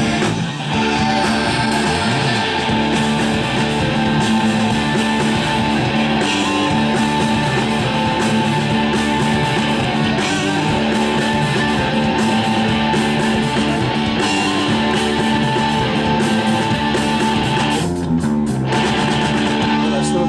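Live rock band playing an instrumental passage led by electric guitars, with no singing.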